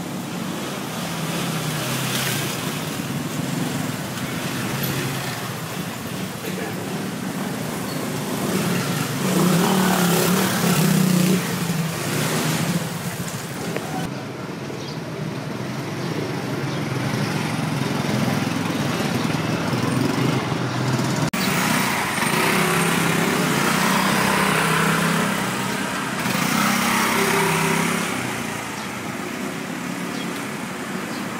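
Motor scooters and small motorcycles riding one after another through a narrow lane. Their engines swell louder as they pass, most strongly about a third of the way in and again in the last third.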